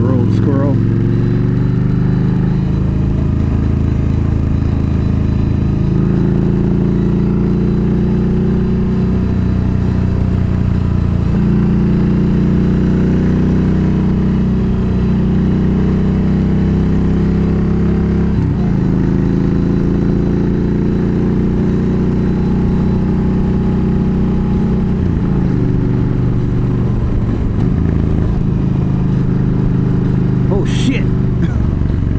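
Yamaha V Star 1300 V-twin motorcycle engine running under way along a country road, its note rising and falling several times as the throttle and gears change.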